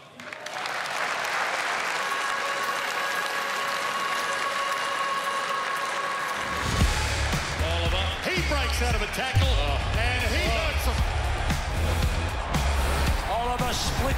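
Audience applauding over a held synth tone. About seven seconds in, a bass-heavy music track kicks in, with bursts of a football commentator's voice over it.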